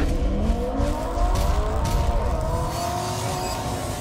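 Car engine revving as an intro sound effect: the pitch climbs over the first second, then holds at high revs and fades slightly toward the end.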